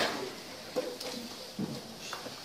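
A group of people shuffling together into a huddle in a small room, with faint movement and a couple of brief low murmurs.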